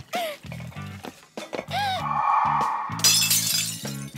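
Background music plays throughout. About three seconds in, a short, loud crash of crockery shattering, like a dish breaking at the sink.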